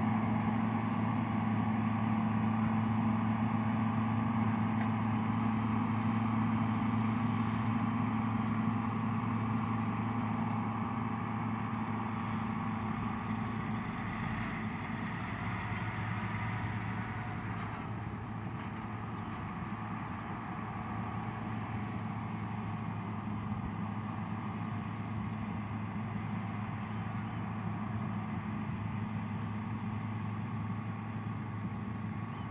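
Heavy diesel engines of a Cat D7R crawler bulldozer and a dump truck running at a steady speed: a constant low drone that eases a little in loudness about halfway through.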